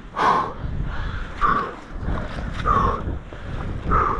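A man gasping and groaning in pain, four short breathy cries about a second apart, just after a hard mountain-bike crash. Wind rumbles on the microphone throughout.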